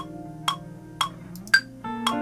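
Ableton Live's metronome clicking about twice a second over a looped electric guitar chord pattern, with one brighter, louder click near the end marking the downbeat. The sustained guitar chord changes just before the end.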